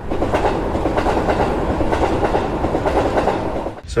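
Train running on rails with a steady clatter, edited in as a sound effect that starts and cuts off abruptly.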